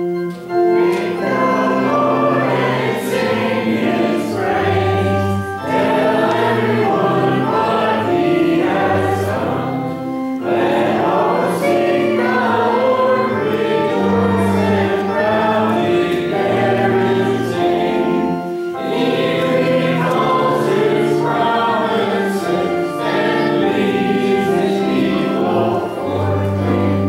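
A hymn sung by a group of voices with keyboard accompaniment, moving in phrases with short breaks between them.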